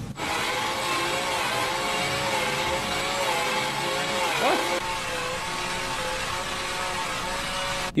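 Cordless drill running with a corn cob on its chuck pressed against a man's teeth: a steady whine over a hiss. About four and a half seconds in, the pitch dips and comes back as the drill briefly slows under the load, and it cuts off just before the end.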